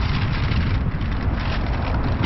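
Steady low rumble of a car running, heard from inside the vehicle, with a rushing noise and scattered faint ticks over it.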